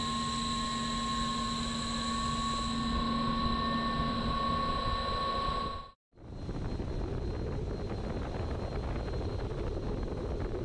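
Wind tunnel airflow rushing steadily past a race car, with several steady whining tones over the rush. The sound cuts out briefly about six seconds in, then the rush resumes, deeper and without the whine.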